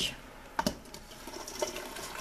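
Shredded cabbage being pushed with a wooden spoon out of a stainless steel bowl into a pot of soup: soft rustling and small ticks, with one sharp knock under a second in.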